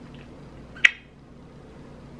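A single short, sharp kiss smack of lipstick-coated lips against the palm of a hand, a little under a second in.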